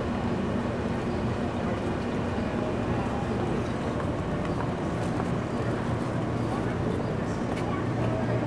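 Indistinct background voices of people talking, over a steady low hum.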